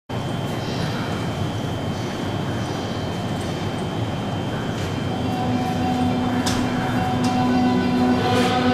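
E653 series electric express train standing at the platform, a steady hiss and hum with a thin high whine. A steady humming tone comes in about five seconds in, and two short clicks sound near the end.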